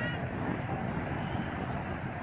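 Steady low rumble with faint voices near the start.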